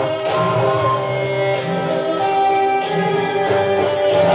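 Violin playing a melody with long held notes, amplified through a stage microphone, over a backing accompaniment with guitar-like plucked strings.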